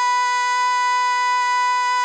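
A singer, likely a woman, holding one long, steady high note in a piece of music, with no vibrato; just after, the voice breaks into a wavering run.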